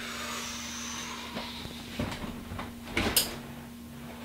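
Small-room tone with a steady low hum, broken by a few soft knocks and rustles as a person sits down and settles into a gaming chair, the last and loudest about three seconds in.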